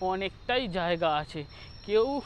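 A man talking close to a lapel microphone in short phrases, with a faint, steady, high-pitched whine behind his voice.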